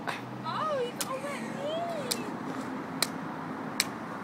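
A toddler's wordless, high-pitched vocalising, rising and falling over the first two seconds. Five sharp clicks come about a second apart over a low, steady background hum.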